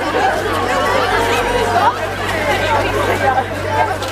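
A crowd of young people chattering, many voices talking and calling out at once as the group walks, over a steady low hum.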